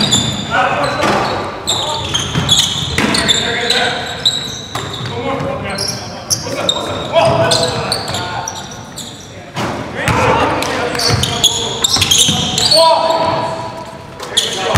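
Basketball game on a hardwood gym floor: the ball bouncing and players shouting to each other, echoing in a large hall.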